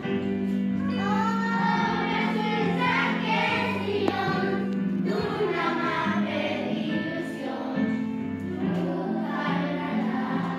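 A group of children singing a Christmas carol together, over a steady instrumental backing.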